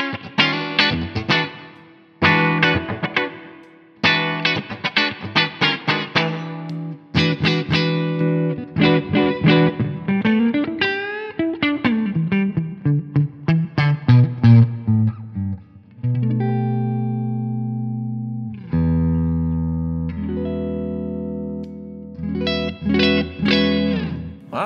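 Ibanez AR220 electric guitar with humbucking pickups, played in fairly clean tone: chords strummed for several seconds, then a single-note run that climbs and falls, then two held chords ringing out and a few more strums near the end. The playing demonstrates the coil-split toggle switch, which makes the tone more percussive and single-coil-like.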